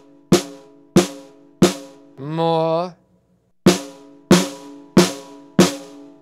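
Snare drum struck with a wooden stick in single, evenly spaced strokes, about one and a half a second. Each stroke is a sharp crack followed by a short ring. There are three strokes, a pause about two seconds in, then five more.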